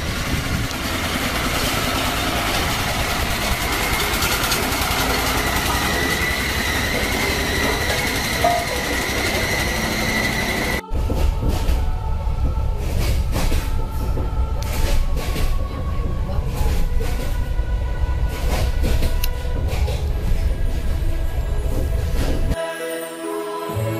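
An old tractor's engine running as it drives along a street, with a steady high whine. After an abrupt cut about eleven seconds in, a moving train heard from inside the carriage: a deep rumble with irregular knocks of the wheels over rail joints.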